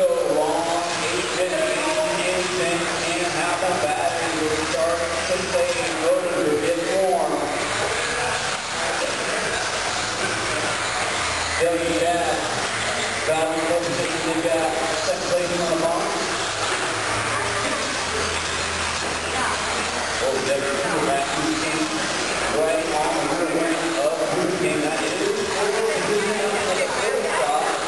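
Several 1/10 scale two-wheel-drive electric RC buggies racing on an indoor dirt track. Their 17.5-turn brushless motors whine, rising and falling in pitch as they throttle up and slow through the corners, over a steady rush of tyres on dirt.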